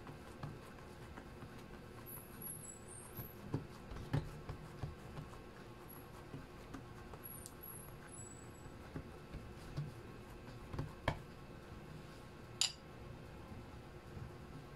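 Faint, scattered soft pats and taps of hands pressing and stretching yeast dough flat on a silicone baking mat, with a few sharper clicks.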